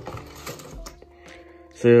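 Cardboard carton being opened by hand: a faint rustle and a couple of soft clicks as the top flap is pulled up, under steady soft background music.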